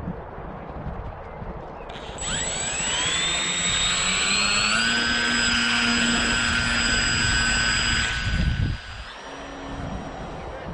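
RC autogyro's electric motor and propeller spooling up about two seconds in with a rising whine, then held at high throttle as a steady whine. The sound drops away near the end as the model is hand-launched and flies off.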